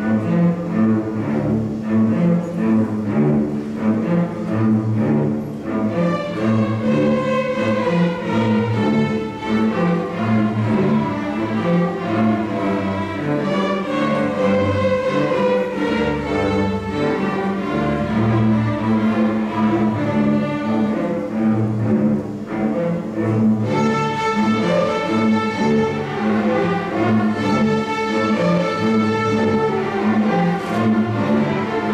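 Middle school string orchestra playing a habanera-style arrangement of Hanukkah songs. Cellos and basses open with a repeating low figure, violins come in about six seconds in, and the upper strings grow brighter again about two-thirds of the way through.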